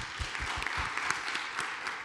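Audience applauding: many hands clapping in a steady, even patter that starts at once.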